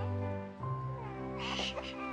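Background music with slow, sustained notes; about a second and a half in, an infant gives a brief high cry.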